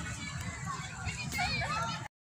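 Children playing and calling out in the background, with short high-pitched voices rising and falling, clearest in the second second.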